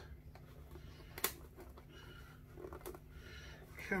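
A small blade prying into the glued seam of a cheap violin's top near the saddle: faint scraping and light ticks, with one sharp click about a second in. The joint is glued solid and resists the blade.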